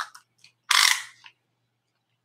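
A tape measure's blade pulled out once: a short rasping rattle a little under a second in, after a couple of faint clicks.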